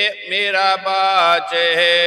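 A man chanting devotional Hindi verse in a slow, sung recitation, drawing the words out on long held notes that step from pitch to pitch.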